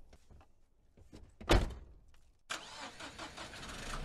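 Intro sound effects: a few scattered clicks, a sharp loud hit about one and a half seconds in, then from a little past halfway a steady mechanical running noise like an engine or machine turning over.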